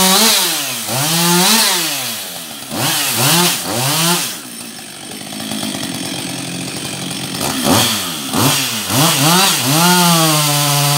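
Husqvarna 562 XP two-stroke chainsaw revved in quick throttle blips, its pitch rising and falling again and again. It drops back to idle for about three seconds in the middle, then blips again near the end.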